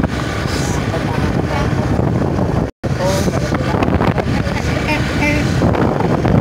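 Wind buffeting the microphone over engine and road noise from a moving motorbike. The sound drops out completely for an instant just under three seconds in.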